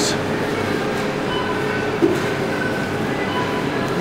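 Steady hum of a sandwich shop's room noise behind the counter, with a brief thump about two seconds in.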